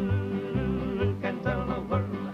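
Male folk vocal trio singing in close harmony. They hold a long note with vibrato through the first second, then move on into the next sung line, over bass notes that fall about twice a second.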